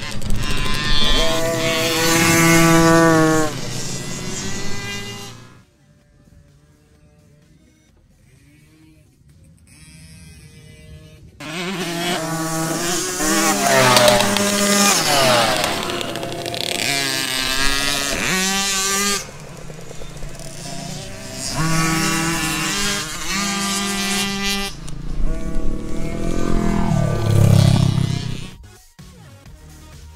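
Small kids' motocross bikes revving as they ride past, their engine pitch climbing and falling with throttle and gear changes over several loud passes, with a lull from about six to eleven seconds in.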